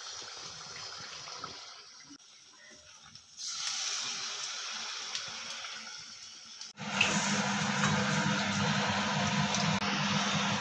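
Batter and fritters deep-frying in hot oil in a steel kadai, with a steady sizzling hiss. It jumps in level where the shots change, and a steady low hum sits under the louder last few seconds.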